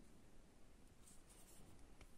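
Near silence: room tone, with faint scratchy handling of a sewing needle and thread being drawn through satin fabric.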